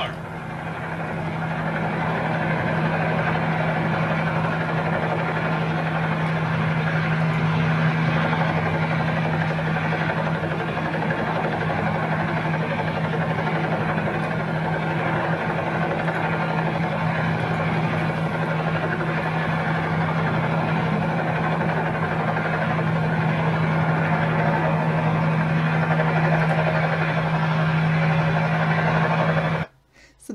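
Steady drone of an aircraft engine heard from inside the cabin, with a constant low hum. It builds over the first two seconds and cuts off suddenly just before the end.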